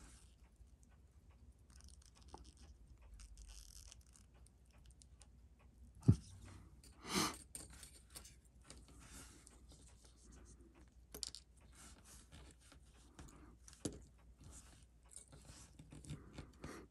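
Faint handling noises of steel tweezers and fingers working on a watch movement in its holder: light rustles and small scattered clicks, with one sharper click about six seconds in and a short rustle about a second later.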